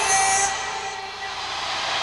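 Live rock band on a soundboard recording, holding a chord of steady tones. A note slides up into it at the start and the sound thins after about half a second.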